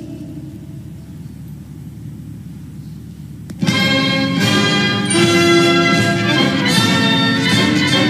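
Low outdoor background for about three and a half seconds, then a military brass band strikes up suddenly with full, sustained brass chords that carry on loudly to the end.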